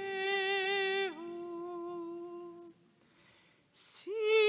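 A woman's solo voice singing a slow hymn in a reverberant church, holding one note and stepping down to a lower one about a second in. The phrase ends near the three-quarter mark, and a short hiss comes just before the next phrase begins.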